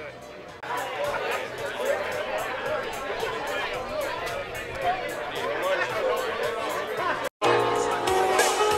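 Many people talking at once, with music in the background. Near the end the sound drops out for a moment, and music with held notes comes in louder.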